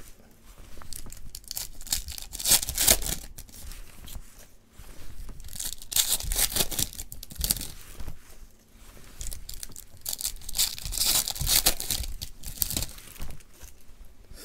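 Trading cards being slid and flipped over one another by hands in nitrile gloves: dry rustling and scraping of card stock in uneven spurts, with a few louder scrapes.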